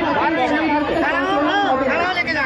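Speech only: a woman talking into a handheld microphone, with the chatter of people around her.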